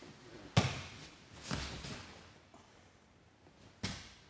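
Bodies hitting a grappling mat as a butterfly sweep lands: a sharp thump about half a second in, which is the loudest, then a duller thud around a second and a half, and another sharp thump near the end.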